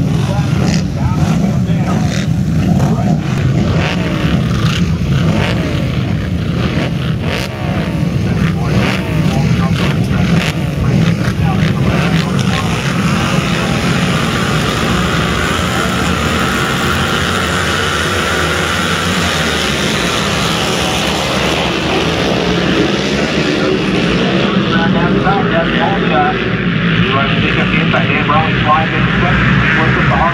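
A pack of twin-cylinder flat-track race motorcycles idling and being revved on the starting line, with sharp blips of the throttle. In the later part the engines rise and fall in pitch under hard acceleration as the pack gets away.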